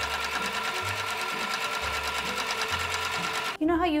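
Electric sewing machine running at a steady speed, with a rapid, even stitching rhythm over its motor tone. It stops near the end.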